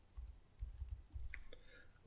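Faint typing on a computer keyboard: a few quiet, separate key clicks as a short word is typed.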